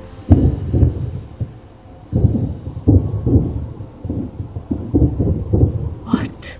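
Deep, low rumbling that swells and fades in irregular surges about once a second, with no clear pitch, of the kind filmed and reported as strange booming sounds from the sky.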